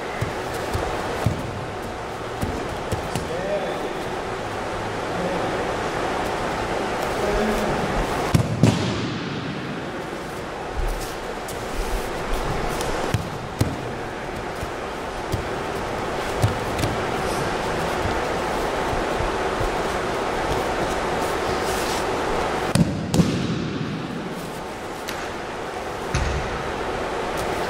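Aikido throws on a wrestling mat in a large gym: a few dull thumps of the thrown partner landing in breakfalls, a pair about a third of the way in and another pair near the end, over a steady room hum.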